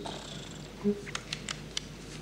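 Quiz-show sound effects: a short low beep about a second in, followed by four quick clicks, as contestants' answer choices register.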